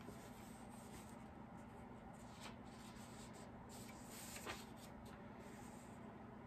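Near silence: room tone with a faint steady low hum and a few faint rustles and clicks, the clearest about four and a half seconds in.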